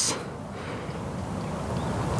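Steady outdoor background noise: an even wash with a low rumble, with no distinct event in it.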